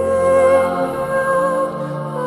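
Background music: a slow, soft new-age piece with one long held melody note over sustained chords.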